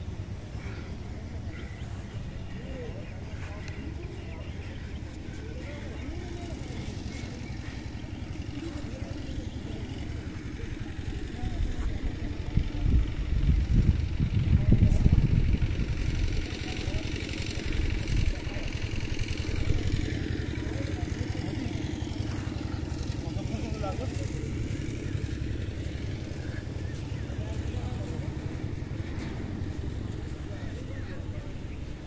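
Indistinct voices in the distance over a steady low rumble, which swells louder for a few seconds in the middle.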